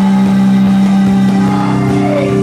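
Rock band playing live and loud, with electric guitar, bass and drums; a low note is held steady under the band.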